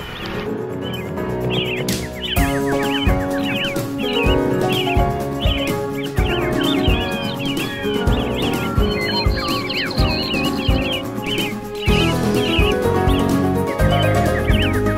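Background music with a steady beat, with short bird-like chirps repeating over it.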